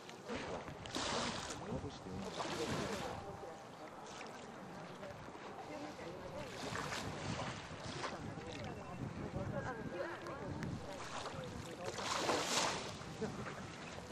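Small waves washing onto the beach, swelling and falling away every few seconds with the loudest wash near the end, over faint background chatter of people's voices.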